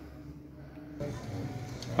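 Quiet room tone, then an abrupt change about a second in to faint outdoor street ambience with a low hum.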